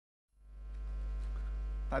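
Electrical mains hum on the audio line, a steady low drone that fades in out of dead silence about a third of a second in.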